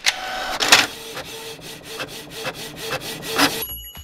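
Countertop blender running and grinding its contents: a noisy whir with a regular pulse about four times a second, stopping suddenly near the end.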